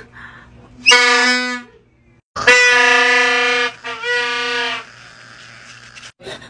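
Plastic torotot party horn blown in three loud, steady, buzzy blasts of one pitch, the middle blast the longest.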